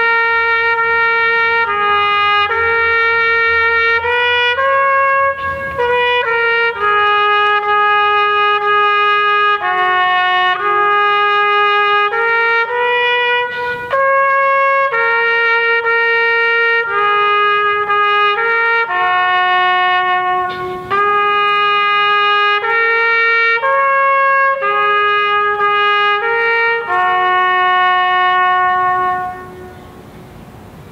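Solo trumpet playing a slow melody of held notes, in phrases with short breaks between them; the last note ends just before the close.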